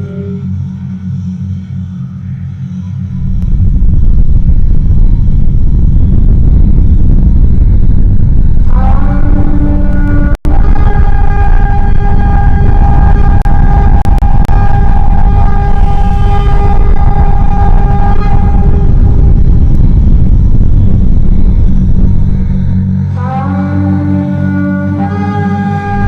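A loud, deep, steady cinematic rumble swells in a few seconds in. From about nine seconds in, a sustained blaring horn-like chord sounds over it, with a brief cut-out soon after it starts, and the rumble fades out just before the end.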